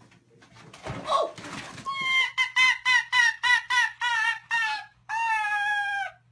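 An animal calling: a quick series of short, high, wavering cries, about three a second, then one long, held cry near the end.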